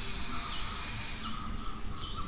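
Chalk scratching on a blackboard as words are written. A faint chirp of two high tones repeats in the background about every second.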